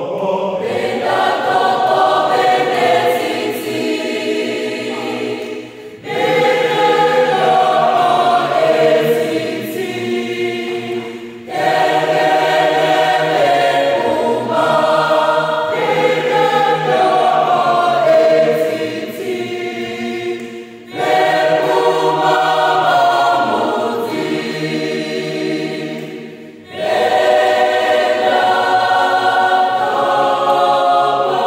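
A mixed choir of men and women singing a cappella in several-part harmony, in sustained phrases of about five seconds, each ending in a brief break before the next.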